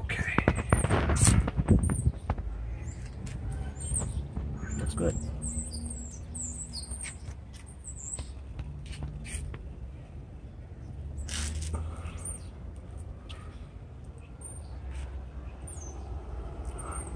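Small birds chirping in quick, high calls through the first half and on and off after, over a steady low rumble. A louder burst of noise comes in the first two seconds.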